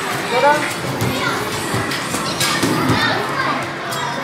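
Busy amusement-arcade hubbub: overlapping children's voices and chatter over arcade-machine music, with a few sharp knocks.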